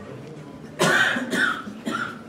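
A person coughing close by: three short coughs in quick succession, starting about a second in, over a soft background murmur.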